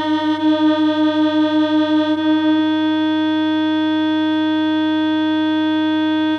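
Waldorf Rocket synthesizer holding one steady note, rich in overtones. Its loudness wavers slightly at first, then settles into an even drone after about two and a half seconds, and the top of the tone turns a little duller about two seconds in.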